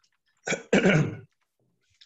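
A man clears his throat in two short bursts about half a second apart, the second one longer.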